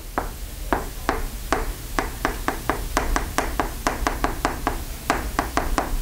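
Chalk writing on a chalkboard: a quick series of sharp taps as the chalk strikes the board with each stroke of the letters, about four a second.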